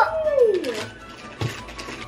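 A young girl's long, drawn-out exclamation that falls steadily in pitch, followed about a second and a half in by a single soft thump.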